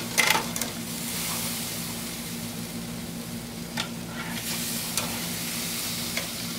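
Gas grill with its burners lit and mushrooms sizzling on the grates: a steady hiss with a low hum under it. There is a sharp click about a third of a second in, and a few lighter clicks near the end.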